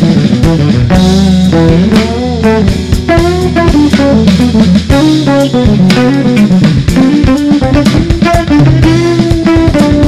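Live jazz trio of electric guitar, electric bass and drum kit playing, with the finger-plucked electric bass to the fore playing sliding melodic lines over the drums.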